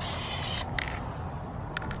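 Aerosol can of clear Flex Seal spraying with a steady hiss that stops about half a second in. A couple of faint clicks follow over a low background rumble.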